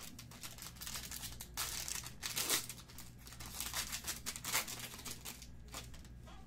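Foil wrapper of a trading-card pack being torn open and crinkled, a run of rustling bursts, the loudest about two seconds in.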